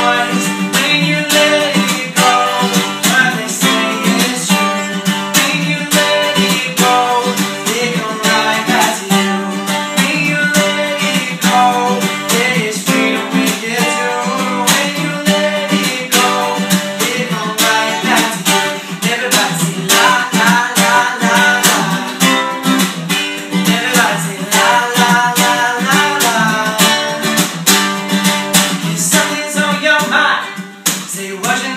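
Two acoustic guitars strummed together in a steady rhythm, with a man singing over them.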